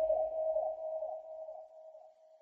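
The fading tail of a baile funk track: a falling electronic sweep repeating about twice a second over a steady held tone, echoing and dying away near the end.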